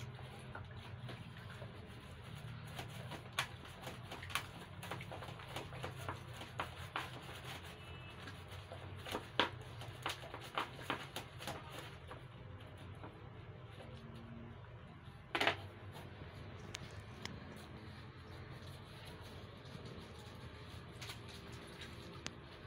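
A washcloth being rubbed with soap in a shallow plastic basin of water by foot: small splashes, wet rubbing and scattered knocks over a faint low hum, the loudest about fifteen seconds in.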